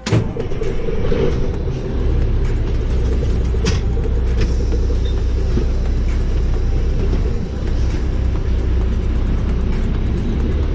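Semi-truck diesel engine running, heard from inside the cab as a low rumble that grows heavier about two seconds in as the truck pulls away, with a couple of short sharp sounds around the four-second mark.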